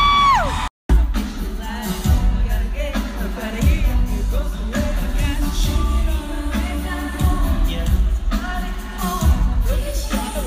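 Live arena concert recorded on a phone. A female singer holds a long, high note that wavers and falls away. After a brief cut, a woman sings along close to the phone over the loud concert music, with low thumps now and then.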